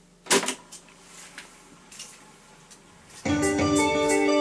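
AKAI 4000DS MK-I reel-to-reel tape recorder's transport lever clunking into play about a third of a second in, followed by a quiet stretch as the tape gets up to speed. Just over three seconds in, guitar-led recorded music starts playing back from the tape through small speakers.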